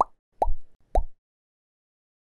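Three short cartoon pop sound effects about half a second apart, each a quick upward-sliding blip, as icons pop onto an animated end screen.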